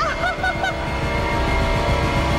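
A woman's high-pitched cackling laugh, a quick run of short 'ha' notes in the first second, over background music with held tones that carries on after the laugh stops.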